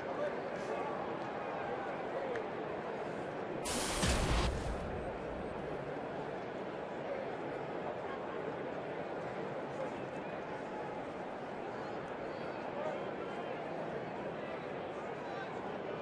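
Ballpark crowd murmur with scattered voices, steady throughout. About four seconds in there is a brief burst of noise lasting about a second.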